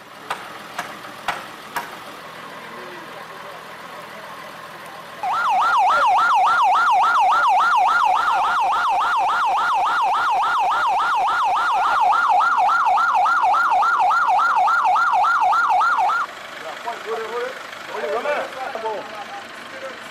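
Ambulance siren in a fast yelp, its pitch rising and falling about three times a second; it starts about five seconds in, is the loudest sound here, and cuts off suddenly about eleven seconds later.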